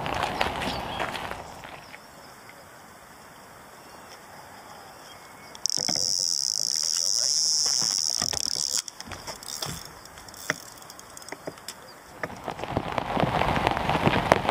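Electronic carp bite alarm on a rod pod sounding one continuous high-pitched tone for about three seconds as line is pulled from the reel: a carp taking the bait. Scattered short clicks follow.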